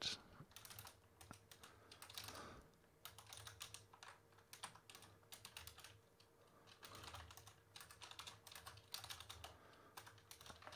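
Faint typing on a computer keyboard: runs of quick keystrokes with brief pauses between them, over a faint steady hum.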